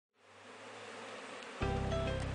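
Honeybees buzzing at a hive entrance, fading in, joined about one and a half seconds in by music with steady held tones.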